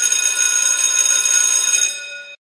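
An electronic bell or alarm tone, a steady ring made of several fixed high pitches, held throughout and starting to fade at the very end.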